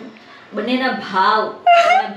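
A woman's giggling, rising to a louder, high-pitched squeal near the end.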